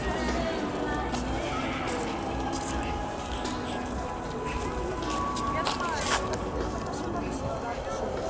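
Outdoor ambience of several people talking at once, their voices overlapping and not close to the microphone, over a steady low rumble. A few sharp clicks are heard, the loudest about six seconds in.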